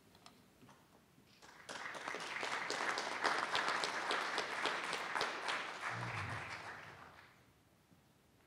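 Audience applauding, starting about a second and a half in and fading out near the end. A brief low thump comes shortly before the clapping dies away.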